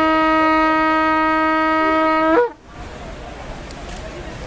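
A long twisted antelope-horn shofar blown in one loud, steady, sustained blast. The blast breaks off with a brief upward crack about two and a half seconds in, leaving only faint background noise.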